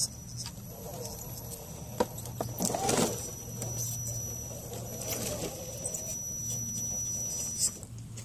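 Axial SCX10 II scale rock crawler's 35-turn brushed motor and geartrain whirring at crawl speed, with scattered clicks and knocks as its tyres and chassis climb over rock.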